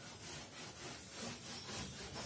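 Blackboard duster rubbing across a chalkboard, erasing chalk writing in quick back-and-forth strokes, about two or three a second.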